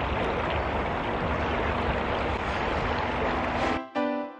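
Choppy lake water washing against a rocky shore, a steady rushing noise; cut off just before the end by piano music.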